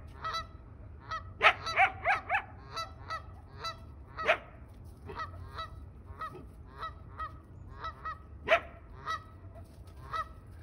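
An animal calling over and over in short, loud, honking calls, several a second at times, with quieter gaps between bursts.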